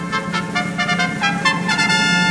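Orchestral music in a brief instrumental bridge with no singing: quick, short, pitched notes, then a held note near the end.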